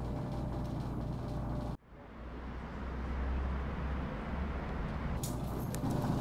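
Low, steady background rumble that cuts out abruptly about two seconds in, then fades back in and holds steady.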